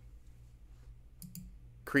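A few quick computer clicks about a second in, unpausing the video. They sit over a faint low hum.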